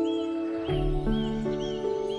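Slow piano music with a new low chord struck about halfway through. Over it, a bird repeats a short rising-and-falling chirp two to three times a second.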